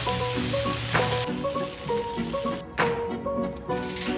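Cubed, seasoned chicken thighs sizzling over high heat on a Weber flat-top griddle. The sizzle is loudest in the first second, weakens, and stops about two-thirds of the way through.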